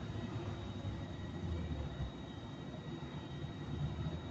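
Steady low background rumble with a faint, steady high-pitched whine, without distinct clicks or other events.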